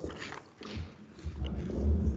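Sheets of paper rustling and being handled close to a desk microphone, with low bumps and rumble from the handling.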